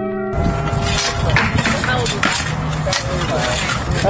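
Music cuts off just after the start, giving way to steel shovels scraping and chopping into dirt full of brick rubble and tossing it into a metal bucket, with scattered sharp scrapes and knocks. Voices talk in the background.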